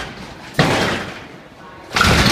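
Lowrider car hopping on its hydraulic suspension, the front end slamming down onto the concrete floor with a loud bang and rattle. Two slams, about half a second in and at the end.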